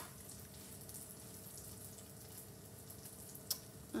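Faint, steady sizzling of hot oil in an empty frying pan just taken off the heat, over a low steady hum. A single sharp click about three and a half seconds in.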